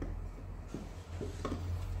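Faint scraping and a few light clicks of a wood-handled hand tool worked in a bolt hole in a wooden board, over a steady low hum.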